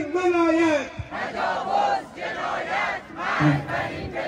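A man shouts a protest slogan through a PA loudspeaker. About a second in, the crowd chants it back in unison, many voices together in several swells.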